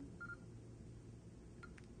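PosiTector 6000 coating thickness gauge beeping as its middle button is pressed to open the menu: one short high beep, then a fainter one about a second and a half later.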